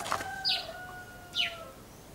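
Birds chirping: two quick downward-sliding chirps about a second apart, over a faint long held call that sags slightly in pitch.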